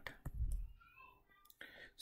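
A single sharp click, then a faint low voice mumbling and a quick breath in.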